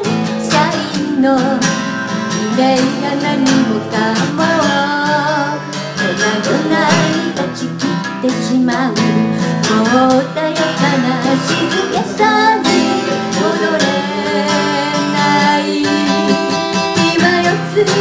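Live folk band music: vocals sung over strummed acoustic guitar, continuing steadily.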